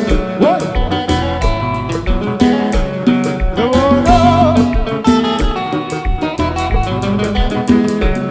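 Konpa music: guitar and bass over a drum kit with a steady beat, and a singer coming in with a wavering sung line about halfway through.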